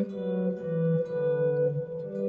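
Electric guitar playing a two-note shape: a held upper note rings while the bass note steps down the scale, changing about half a second in and again about a second in.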